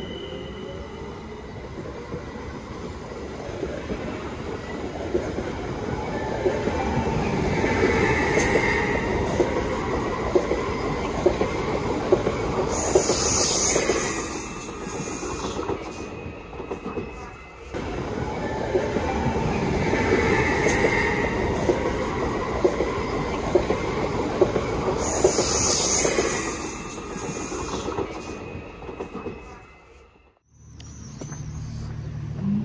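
Train running on rails, rumbling and swelling in loudness with bursts of high wheel squeal. The same stretch of sound repeats about every twelve and a half seconds and drops away suddenly at the end.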